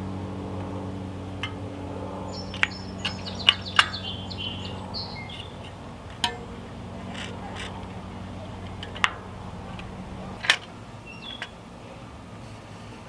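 Metal spoke wrench clicking against the spoke nipples and spokes of a bicycle wheel being trued: a scattering of sharp clicks, the loudest near the end. Small birds chirp in the background over a steady low hum that stops near the end.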